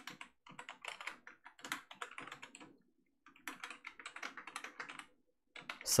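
Computer keyboard typing: two quick runs of keystrokes, with a short pause about halfway through.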